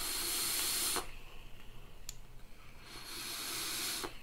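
Air hissing through the open air holes of a Velocity rebuildable atomizer on a vape mod as it is drawn on: one hiss about a second long at the start and a second one near the end.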